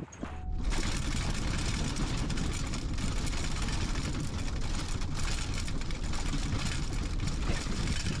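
Ford F-Series Super Duty pickup driving, heard inside the cab: steady road and drivetrain noise with constant rattling and knocking of the cab and test gear. It starts suddenly just under a second in, after a short quieter moment.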